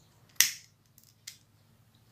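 Sharp click of a handheld lighter about half a second in, followed by two faint ticks.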